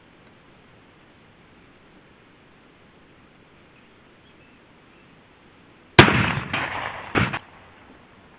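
A single loud .223 rifle shot about six seconds in, a sharp crack that rings on and fades. A second, shorter crack follows about a second later. The bullet is striking ballistic gel blocks.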